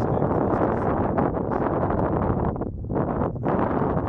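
Wind blowing across the microphone, a steady loud noise that eases briefly twice near the end.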